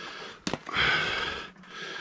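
A single sharp click from a hand caulking gun loaded with 5200 sealant, then a breathy rush of air about a second long.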